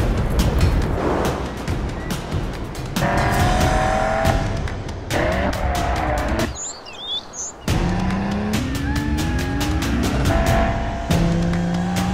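Sports car engines accelerating and rising in pitch, with tyre squeal, mixed under fast music with a steady beat. Past the middle the music briefly drops out, leaving a short high-pitched squeal.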